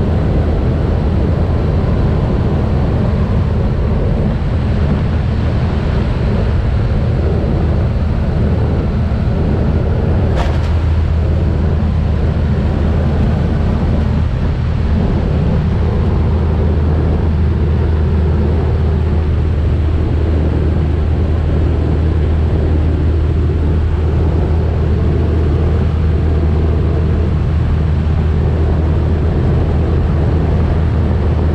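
Steady, loud drone of a twin-turboprop jump plane in flight, with wind rushing past the open jump door and buffeting the microphone. A single brief click about ten seconds in.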